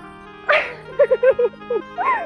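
A woman laughing in a string of short giggles over steady background music, starting with a burst about half a second in.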